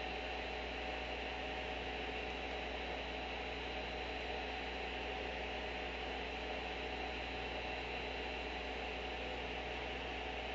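Steady electrical hum and hiss with no music or other events, while the streamed video's sound has stalled during a progressive-download lag.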